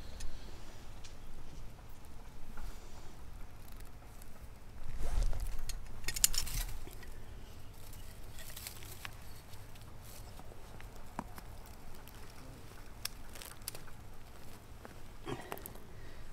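Rustling and crunching of gravel and dry leaves as a landscape spotlight is handled and its stake set into the ground, loudest about five to seven seconds in, with a few small sharp clicks scattered through.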